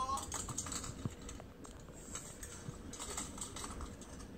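Light, irregular clicks and rattles of small plastic Lego pieces being handled, played back through a tablet speaker.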